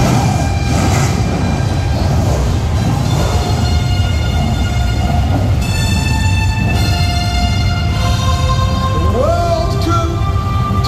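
Dramatic start music played loudly over a low, continuous rumble of F1 stock car engines running on the starting grid. Near the end, rising pitch glides come in.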